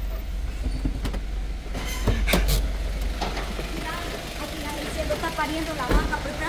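Vehicle engine running with a low steady rumble, heard from inside the cab, with a couple of sharp knocks about two seconds in. Voices come in near the end.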